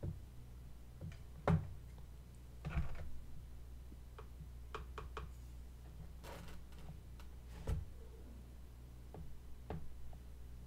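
Faint, scattered clicks and taps, a few of them louder knocks, over a steady low hum.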